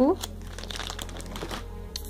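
Plastic trading-card sleeve pages crinkling as they are handled: a run of small, irregular crackles.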